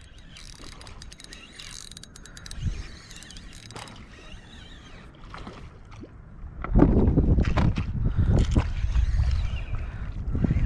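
Spinning reel being cranked, its gears and ratchet clicking, as a hooked fish is reeled in to the kayak. From about seven seconds in, a much louder stretch of water splashing and wind rumble on the microphone takes over.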